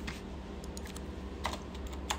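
Computer keyboard typing: a few scattered, irregular keystrokes, the sharpest about one and a half seconds in, over a low steady hum.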